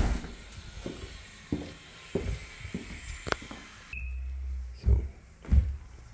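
Footsteps walking along a tiled hallway floor: a few irregular soft thumps, with a brief low rumble about two-thirds of the way through.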